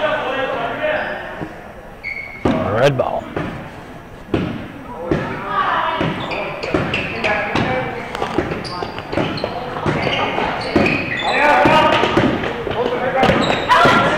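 A basketball bouncing on a hardwood gym floor, a run of sharp knocks through the echoing hall, with players' and spectators' voices in the background.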